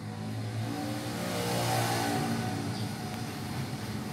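A motor vehicle engine passing by, growing louder to about two seconds in and then fading away.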